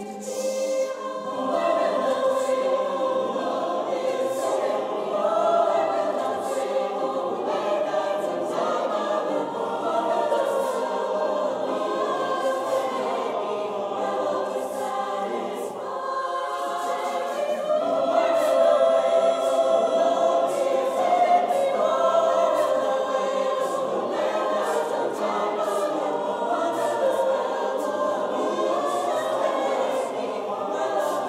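Mixed choir of men's and women's voices singing a cappella in several parts, holding chords that shift in pitch, with a short drop in loudness about sixteen seconds in.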